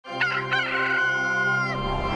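A rooster crowing once: one long, drawn-out call that breaks off with a drop in pitch near the end, over a steady sustained music chord.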